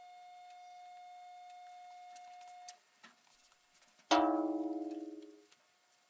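A single bright bell chime rings out about four seconds in and fades over about a second and a half, after a few soft clicks: the notification-bell sound effect of a subscribe-button animation. Before it, a faint steady whine stops abruptly about two and a half seconds in.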